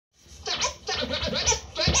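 Vinyl record scratched back and forth by hand on a turntable, cutting a vocal sample into quick bursts that slide up and down in pitch.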